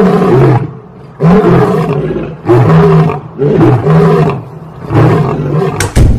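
A lion roaring in a series of five long, loud calls about a second apart, each rising and falling in pitch.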